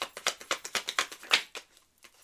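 Tarot cards being handled and shuffled: a quick, irregular run of crisp card snaps and taps, the loudest about a second and a half in.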